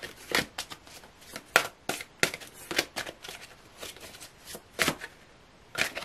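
A tarot deck being shuffled by hand: packets of cards lifted and dropped onto the pile, giving irregular sharp slaps and clicks, with a brief lull about five seconds in.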